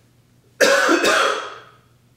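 A man coughs loudly, twice in quick succession, a little over half a second in. The second cough trails off over most of a second.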